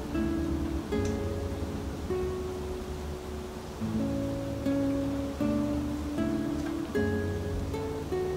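Background music: plucked acoustic guitar playing a slow, gentle melody of held notes.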